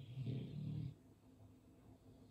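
A man breathing out audibly with a low hum in the voice, lasting just under a second.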